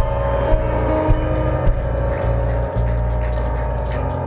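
Live church worship band music: sustained keyboard chords over a held bass, with a few light high ticks.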